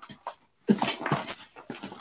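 A woman laughing in short, choppy bursts.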